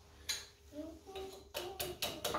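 Small metal clicks and clinks as steel cotter pins are bent over on a quick-hitch hook: a single click about a third of a second in, then a quick cluster of clinks near the end.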